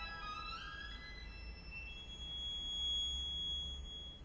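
Violin playing a quick rising run that climbs to a very high note. The note is held thin and steady for the last couple of seconds.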